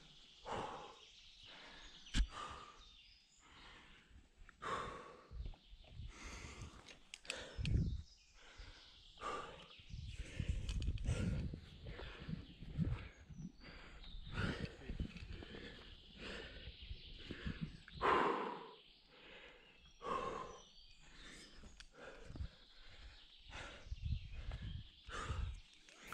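A rock climber breathing hard in irregular loud exhalations while pulling through hard moves, with scuffs and knocks of hands and shoes on the rock. A short stretch of low rumble comes in the middle.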